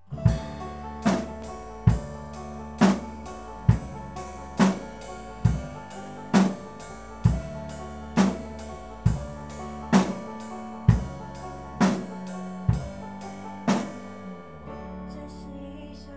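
Acoustic drum kit played in a slow, steady backbeat, bass drum and snare alternating about one stroke a little under every second, over a backing track of the song. The drumming stops about a second and a half before the end while the backing music carries on.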